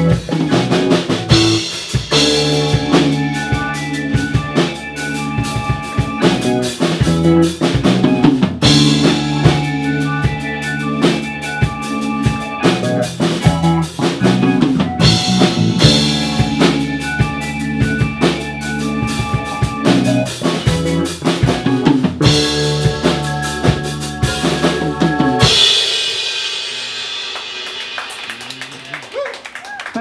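Live rock band playing loud and heavy: drum kit with kick and snare hits over sustained bass and chords. About 25 seconds in, the band stops on a final hit, and the cymbals and amplifiers ring out and fade as the song ends.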